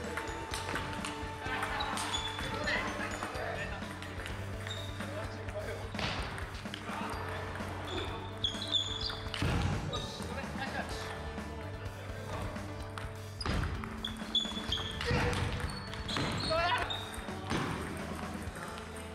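Table tennis rallies: the ball repeatedly clicks off paddles and the table, over background music.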